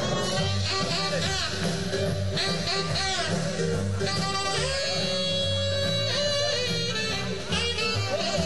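Live swing band playing an instrumental break. A saxophone takes the lead over the band's steady beat, with a trombone heard briefly near the start.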